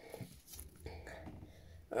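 Faint handling noise: light rustles and small scattered knocks as hands pick up and arrange foam stress balls.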